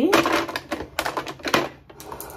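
Makeup items being handled on a counter: a brief rustle, then several sharp clicks and taps.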